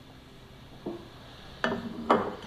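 A ceramic plate is lifted off a ceramic bowl, with a faint clink a little under a second in and a sharper, briefly ringing clink of ceramic near the end.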